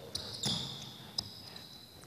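Basketball shoes squeaking on a hardwood court as players cut and slide. One long, high squeal starts about half a second in, with a single sharp knock a little past the middle.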